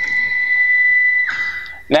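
CrossFire CNC plasma table's stepper motor driving the torch carriage along the gantry tube in a continuous jog: a steady high whine that stops a little over a second in.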